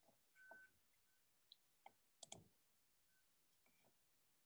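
Near silence with a few faint, scattered clicks, the loudest a pair about two seconds in.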